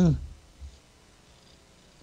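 A man's voice trailing off at the very start, then near silence with only a faint low room hum.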